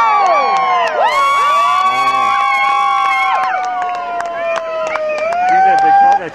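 A crowd of people cheering and whooping, with several long held yells overlapping, as a wave of triathlon swimmers sets off into the water.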